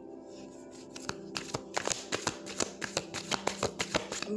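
A deck of tarot cards being shuffled: a rapid run of light clicks and riffles starting about a second in, over soft background music with sustained tones.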